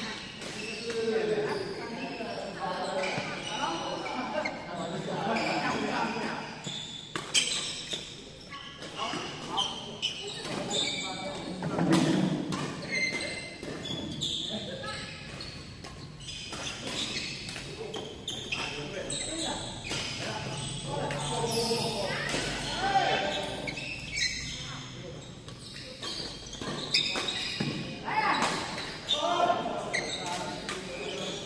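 Badminton rackets striking a shuttlecock in rallies, sharp knocks at irregular intervals, with players' footfalls and voices in a large echoing hall.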